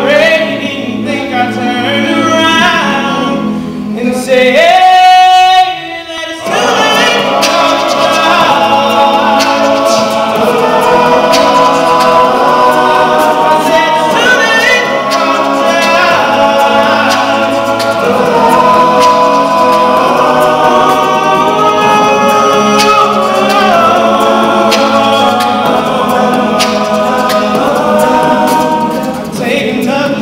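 Male a cappella group singing a pop song in close harmony with no instruments. About five seconds in, one voice holds a loud, wavering high note, and then the full group comes back in.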